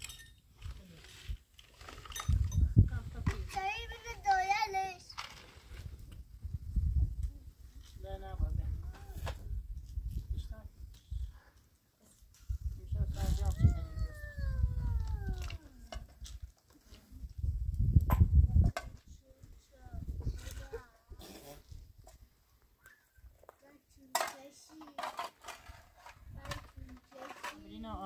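Livestock bleating, a few wavering calls and one long falling call, over low gusts of wind rumbling on the microphone.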